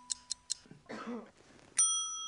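Game-show countdown clock effect, fast even ticks at about six a second, stopping about half a second in. Near the end a single bright bell ding rings on with several high tones, the cue that the answers are revealed.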